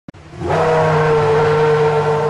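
Race car engine sound effect: a short click, then the engine comes up within about half a second and holds one steady pitch at high revs.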